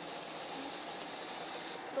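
Crickets chirring: a steady, high-pitched, rapidly pulsing trill that drops in level near the end.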